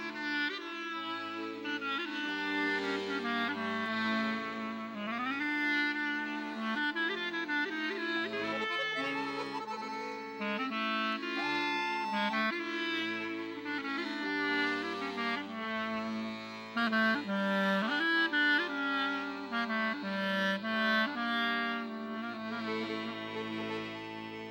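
Clarinet playing a melody over sustained accordion chords, an instrumental passage without voice.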